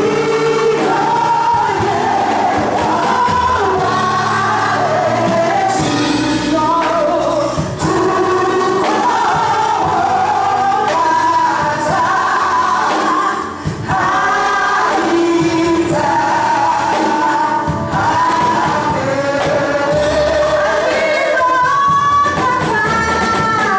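Live gospel praise singing: several voices singing together, led through microphones, over a church band of drums, electric guitar and keyboard.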